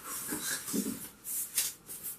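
Cardboard box and packaging wrap rustling and scraping in several short bursts as a wrapped guitar body is lifted out of its box.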